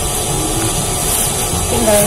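Clear plastic film rustling as hands wrap it around a folded stack of clothes, over a steady background hiss.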